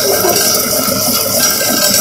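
Stock (yakhni) boiling hard in hot oil with fried onions in a clay handi while a wooden spoon stirs it: a steady watery hiss and bubbling.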